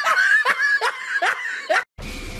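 A person laughing in a string of short, high-pitched bursts, about four in quick succession, cut off abruptly just before the end.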